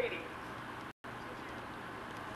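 A voice trails off at the start, then the sound cuts out completely for a split second about a second in, a break in the home-video recording. After it comes only steady, faint background noise.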